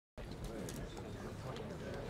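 Outdoor ambience after a moment of silence: birds cooing low, with faint voices in the background.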